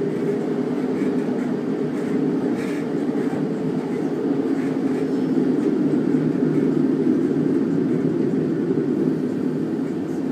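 Class 150 Sprinter diesel multiple unit heard from inside the carriage while under way: a steady low rumble, swelling slightly in the middle.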